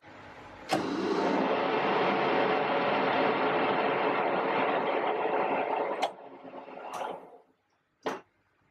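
Metal lathe started with a click about a second in. Its spindle and headstock gearing run with a steady mechanical whirr, spinning the mounted chuck back plate. Near six seconds it is switched off with a click and runs down to a stop.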